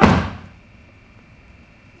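A single dull thump at the very start, fading out within about half a second, then quiet room tone.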